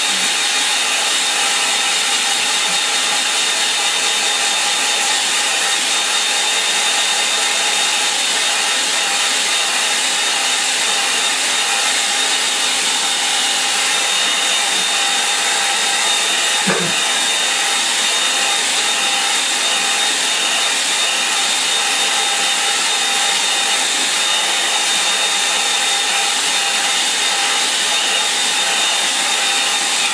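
Handheld hair dryer blowing steadily, drying wet watercolour paint on paper: an even rush of air with a faint steady whine. It switches off right at the end.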